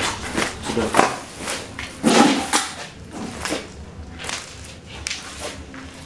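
Footsteps and rustling over plastic litter and debris on the floor: a string of irregular scuffs and crackles, loudest about two seconds in.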